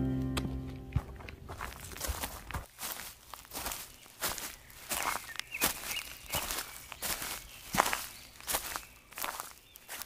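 Footsteps of a hiker walking on a rocky stone trail, steady at about two steps a second. Music fades out in the first second.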